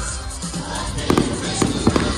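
Fireworks going off, with a few sharp bangs about a second in and near the end, over loud music.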